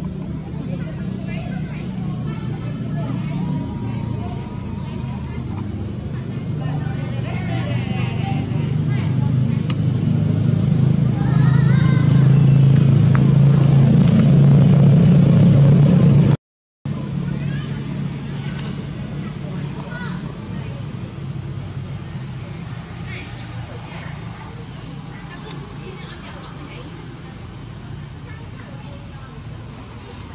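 A steady low engine hum from a motor vehicle running nearby, building louder through the first half, with indistinct voices and a few faint high chirps. The sound cuts out for a moment about sixteen seconds in, then goes on quieter.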